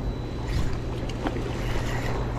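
River rapids rushing steadily, with a few faint short ticks over the water noise.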